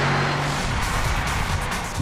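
Background music over the Mercedes-Benz SLR McLaren Roadster's supercharged 5.5-litre engine running as the car drives, with road noise.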